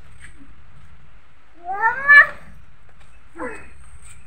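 Two short high-pitched vocal calls: a louder one rising in pitch about two seconds in, and a brief falling one near the end.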